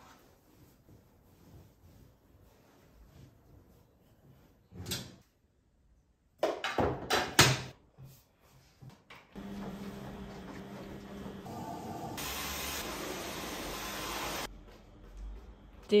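Laundry rustling as it is stuffed into a front-loading washing machine, then a few sharp knocks and clicks as the door is shut and the machine is handled. A steady machine running sound with a low hum follows for about five seconds, growing brighter near the end before cutting off suddenly.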